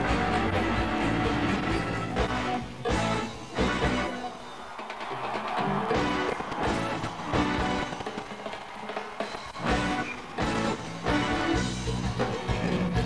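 A live band playing with drum kit and guitar. The bass end drops away for a couple of seconds around the middle, then the full band comes back in with loud drum hits.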